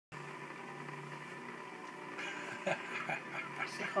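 Steady low hum of a small aquarium's filter unit with a faint whine, joined from about halfway by several short breathy sounds.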